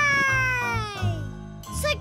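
A young child's drawn-out, high cheer that falls steadily in pitch and fades by about a second and a half in, over soft background music.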